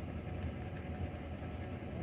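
Steady low engine hum inside a semi-truck's sleeper cab, the truck idling.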